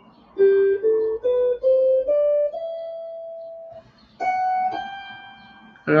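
Electric guitar playing an ascending G major scale one note at a time. Six quick notes climb step by step, then the last two notes are held and left to ring.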